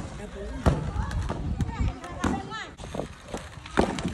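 Several sharp clacks of skateboards striking pavement, spread irregularly across a few seconds, with children's voices in the background.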